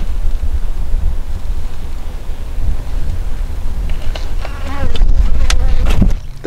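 Honeybees buzzing around the exposed comb of a feral colony, over a low rumble of wind on the microphone. A louder buzz, wavering in pitch, comes in about four and a half seconds in, as a bee flies close.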